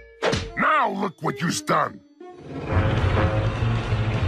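A cartoon character's wordless vocal cry, its pitch sliding up and down for about two seconds. It is followed by cartoon score music that comes in low and full.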